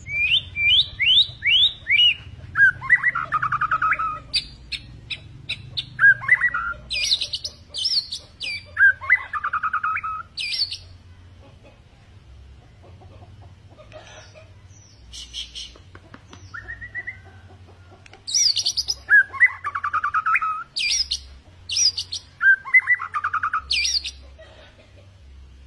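White-rumped shama (murai batu) in full song: loud, varied phrases of quick rising whistles, buzzy trills and short high notes. There is a lull of several seconds midway, then the song picks up again.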